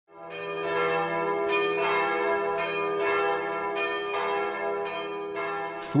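Bells ringing: a series of about eight struck bell tones, each one ringing on into the next, over a steady low hum. The sound fades in over the first second.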